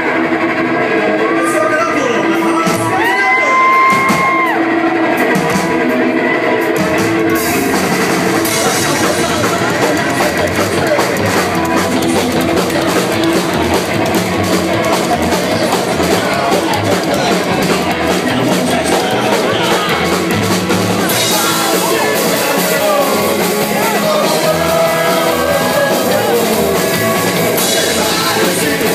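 Live rock band playing in a club: electric guitar and a singer with long held notes early on, then the drum kit driving in about seven seconds in, with the cymbals getting louder near the end.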